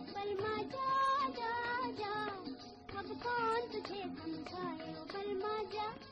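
A voice singing a 1951 Hindi film song, in phrases with gliding, ornamented pitches, over instrumental accompaniment with a steady beat. It is an old film soundtrack recording with no high treble.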